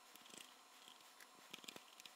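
Faint, quick small clicks and ticks of screws and nuts being handled on sheet-metal panels.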